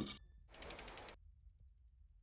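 Logo-sting sound effect: a quick run of ratchet-like clicks lasting about half a second, starting about half a second in.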